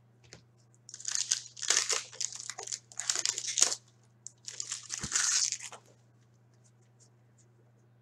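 Foil wrapper of a hockey card pack crinkling and tearing as it is opened and handled, in two bouts of rustling, the first about a second in and the second around five seconds. A steady low hum runs underneath.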